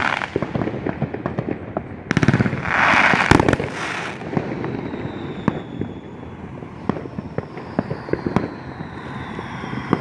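Aerial fireworks going off: scattered bangs and pops, with a dense stretch of crackling about two to four seconds in and a loud bang in the middle of it. The pops then thin out.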